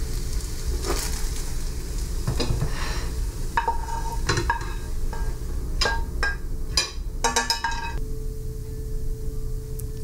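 Scrambled eggs sizzling in bacon grease in a nonstick frying pan while a plastic spatula stirs and knocks against the pan in scattered clicks, then scrapes the eggs out onto a plate.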